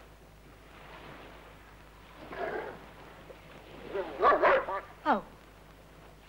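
A dog yelping and whining, with a short cry about two seconds in and a louder run of yelps around four seconds in.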